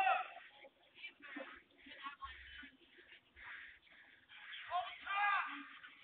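Faint, distant human voices crying out in high-pitched wails, loudest at the start and again about five seconds in, heard muffled through a doorbell camera's microphone.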